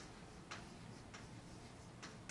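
Chalk writing on a blackboard: a few faint, sharp clicks of the chalk striking the board, unevenly spaced about half a second apart.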